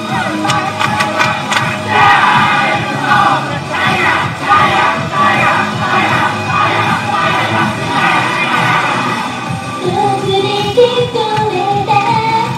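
Loud, upbeat idol pop song on a backing track, an instrumental dance passage for most of the stretch. Near the end a woman's voice comes in, singing a melodic line into a microphone.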